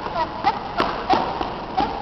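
A few light knocks or taps, about four in two seconds and unevenly spaced, with brief snatches of voice in between.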